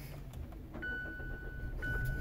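A car's electronic warning chime starts about a second in. It is one steady high tone that breaks briefly and starts again about once a second, over a low steady hum.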